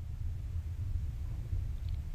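Room tone: a steady low hum with a faint hiss and nothing else of note.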